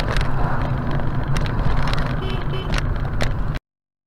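Steady engine and road rumble inside a moving car, recorded by a dashcam, with a few small clicks and knocks from the cabin. It cuts off abruptly about three and a half seconds in.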